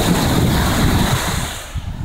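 Wind buffeting the phone's microphone over the steady wash of ocean surf, the noise easing off near the end.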